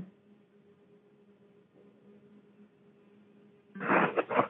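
A telephone line on hold: faint hiss with a low steady hum. Near the end comes a short loud burst like a voice.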